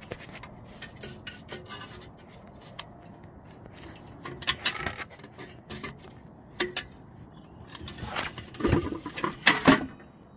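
Metal street-lantern housing being handled and its hinged cover swung shut: a run of metallic clicks, knocks and scrapes, with louder clattering about halfway through and again near the end.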